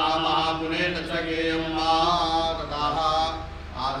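A man chanting Sanskrit puja mantras in a sustained, melodic recitation, with a brief pause near the end.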